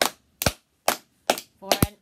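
Hands clapping close to the microphone in slow, even, sharp claps, about two a second.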